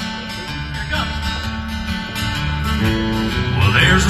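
Acoustic guitars played live, picking out the instrumental opening of a country-folk song, the playing growing a little louder toward the end.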